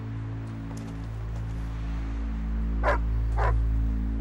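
A dog barks twice, about half a second apart, near the end, over soft background music.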